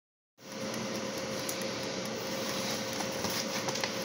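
Steady whirring mechanical room noise with a constant low hum, like household appliances running, starting about half a second in, with a few faint clicks in the last second.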